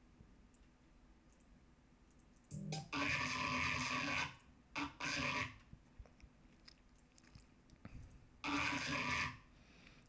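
Dubstep growl bass synth patch in Native Instruments Massive, built on Wicked wavetable oscillators through a Scream filter, playing three gritty notes: a long one about two and a half seconds in, a short one around five seconds, and another near the end. Between the notes there is near silence with faint mouse clicks. It sounds like something being crushed up and twisted around.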